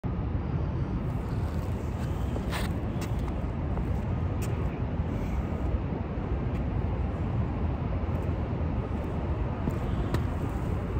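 Steady low outdoor rumble with a few faint taps of shoes on the concrete court.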